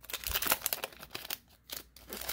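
Foil wrapper of a Pokémon card booster pack crinkling in the hands as the cards are slid out of the opened pack: a run of quick, irregular crackles with two short breaks near the end.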